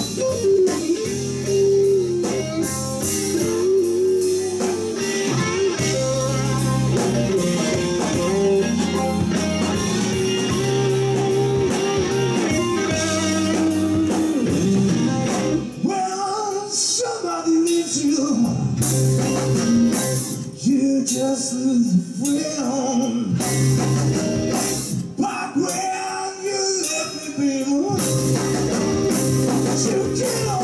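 Live blues band playing: electric guitars, bass, keyboards and drums. A male singer comes in about halfway through, over lighter backing.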